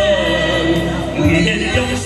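A man and a woman singing a duet into handheld microphones over backing music.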